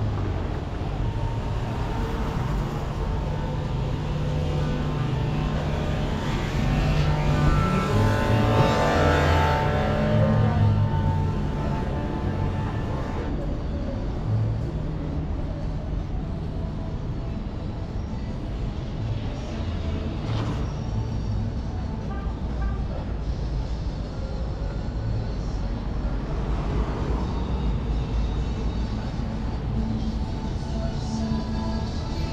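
City street traffic: car and motorcycle engines running past, the loudest a vehicle that swells up and fades away about eight to ten seconds in, with another smaller pass near the end. Music plays faintly in the background.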